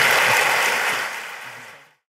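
Audience applauding steadily, fading away over the last second.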